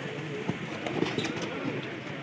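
Spectator crowd at an outdoor kabaddi match: many voices talking and calling over one another, with a couple of sharp knocks about half a second and one second in.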